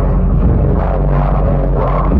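Loud live hip-hop concert music from the venue's PA, with a heavy, steady bass.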